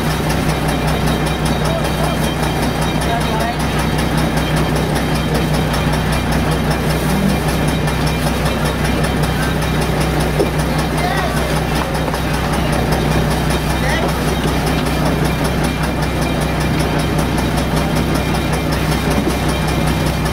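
An engine idling with a steady, even low hum throughout, with people's voices talking in the background.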